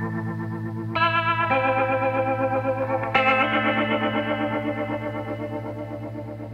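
Instrumental background music: sustained, wavering chords on an effects-laden instrument, changing chord about a second in and again about three seconds in.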